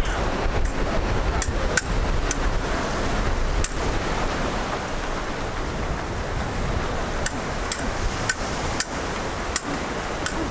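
Ocean surf washing onto a beach, with wind buffeting the microphone as a steady low rumble, and scattered sharp clicks throughout.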